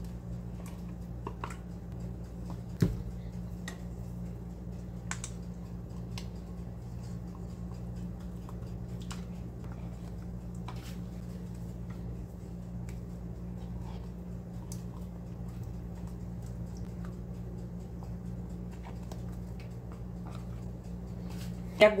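Faint scrapes and light taps of a spatula and plastic tub against a stainless steel mixing bowl as cream cheese is scooped in, with one sharper knock about three seconds in, over a steady low electrical hum.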